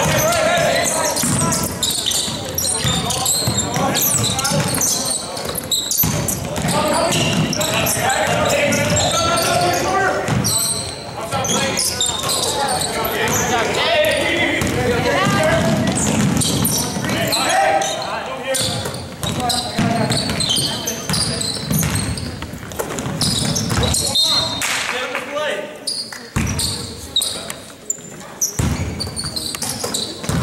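Live basketball game in a large gym: a basketball dribbled on a hardwood court amid many short thuds and knocks, with players' and spectators' voices calling out. Everything echoes in the hall.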